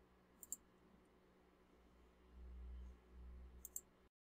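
Faint computer mouse clicks: a quick pair about half a second in and another pair near the end, with a faint low rumble between them.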